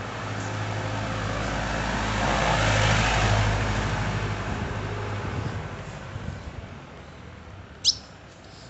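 A motor vehicle passes on the street over a low engine hum, its noise swelling to a peak about three seconds in and then fading away. Near the end the caged azulão gives one short, high chirp.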